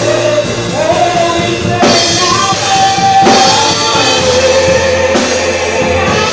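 Live gospel worship music: voices singing into microphones over a drum kit and electronic keyboard, with drum and cymbal hits about two, three and five seconds in.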